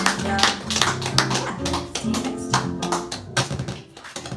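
Digital stage piano playing rhythmic chords, each struck with a sharp attack, dropping away just before the end.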